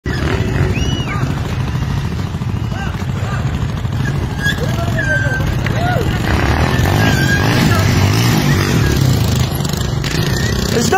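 Motorcycle engine running as it rides past close by, over the steady rumble of road traffic, growing a little louder in the second half.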